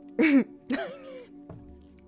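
A woman's short laugh in two quick bursts, the first the loudest and falling in pitch, over soft steady background music.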